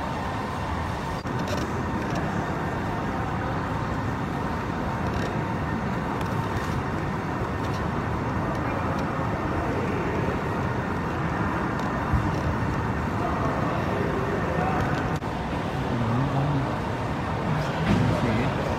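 Steady hum of a large air-conditioned hall, with faint distant voices near the end.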